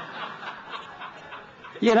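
Congregation laughing at a joke, a spread of many chuckles that slowly dies down; the preacher's voice comes back in just before the end.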